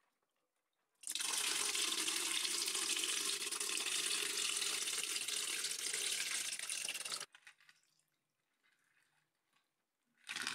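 Hundreds of water-gel beads poured from a plastic bucket into an upright plastic pipe: a steady, dense rush like running water, starting about a second in and cutting off suddenly about seven seconds in.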